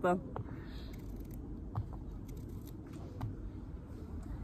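Small kitchen knife cutting a cucumber held in the hand: a few faint, sparse clicks of the blade going through the skin and flesh over a steady low background.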